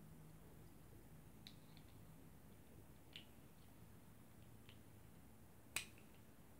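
Near silence with a few faint clicks of small plastic toy pieces being pressed together, the sharpest one near the end as the parts snap into place.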